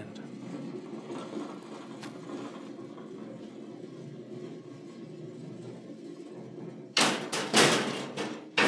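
Overhead cash ball railway of a Lamson Paragon shop cash system running: a ball rolling along the ceiling rails with a steady low rumble, then two loud knocks about seven seconds in.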